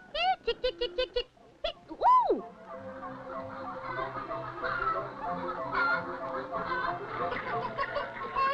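Cartoon barnyard fowl clucking in a quick run of short calls. About two seconds in comes one loud swooping glide that rises and then drops, followed by orchestral background music.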